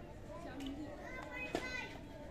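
Badminton racket striking a shuttlecock once, a single sharp crack about one and a half seconds in, over a background of chattering voices and a high-pitched shout.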